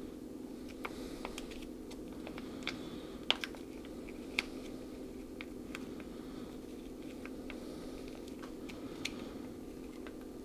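Foil MRE applesauce pouch being squeezed and worked with a metal utensil, giving scattered faint crinkles and ticks, over a steady low hum.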